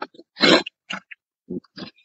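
A horse snorting: a short noisy burst about half a second in, followed by a few shorter, fainter ones.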